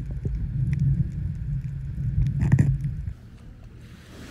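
Muffled underwater rumble and crackle of water moving against a camera held under the sea while snorkeling, with a brief louder burst about two and a half seconds in; it cuts off about three seconds in.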